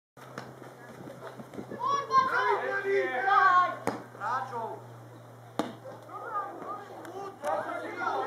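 Young footballers' voices shouting and calling out, with two sharp thuds of the football being kicked, one just before halfway and another a couple of seconds later.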